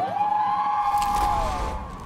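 Transition sound effect: a siren-like held tone that swoops up at the start, holds steady and sags slightly near the end, with a low rumble coming in underneath about a second in.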